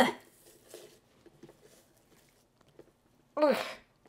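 A woman's two short grunts of effort, "ugh", each falling in pitch, one at the start and one near the end, made as she presses ground meat down hard into a loaf pan.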